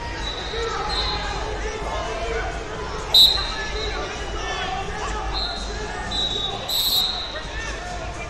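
Referee whistles in a busy wrestling tournament hall: a sharp, loud blast about three seconds in and another just before the end, with fainter steady whistle tones from farther off, over the murmur of many voices.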